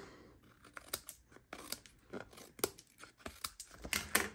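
Small craft scissors snipping off the overhanging ends of cardstock strips: a quiet, irregular series of short, sharp snips.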